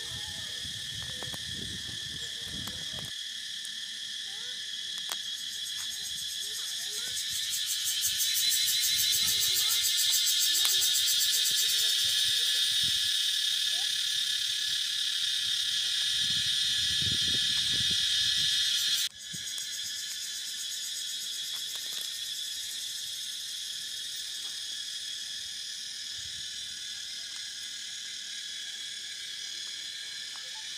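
A chorus of insects buzzing steadily and high-pitched. It swells louder about a quarter of the way in and drops back abruptly a little past the middle.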